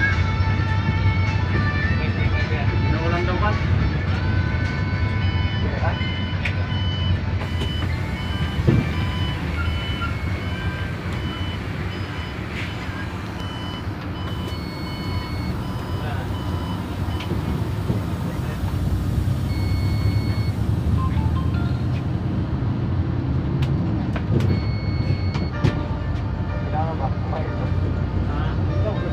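Bus running along a road in traffic, heard from inside the cabin: a steady low engine and road rumble. Through the middle stretch a short high beep repeats at an even pace.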